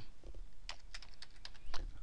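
Typing on a computer keyboard: a quick run of separate keystrokes as a short word is typed.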